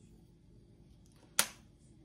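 A quiet kitchen room tone broken once, about one and a half seconds in, by a single sharp click of a small glass spice jar knocking against the countertop as it is set down.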